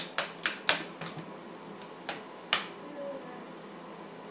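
A toddler banging on a plastic high-chair tray and bowl, making a quick run of sharp taps, about four a second. The taps fade after about a second, and two more come a couple of seconds in.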